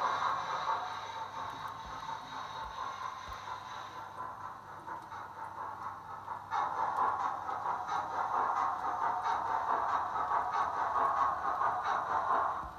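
Sound decoder of a model steam locomotive playing steam-engine sound through its small onboard speaker as the locomotive runs along the track, getting louder about six and a half seconds in as it comes closer.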